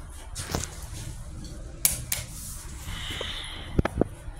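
Hydraulic elevator arriving at a landing with its doors starting to slide open: a few sharp clicks and knocks, then a short hissing whir about three seconds in, followed by two sharp clacks near the end.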